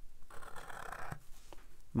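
Felt-tip Sharpie marker scratching across cold-press watercolor paper as lines are drawn, in two strokes with a short break about a second in.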